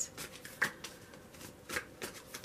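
A deck of tarot cards being shuffled by hand, cards sliding and rustling against each other, with two louder card slaps, about half a second in and near the end.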